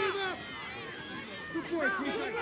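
Several people calling out at once, voices overlapping, with a quieter lull in the middle before the calls pick up again.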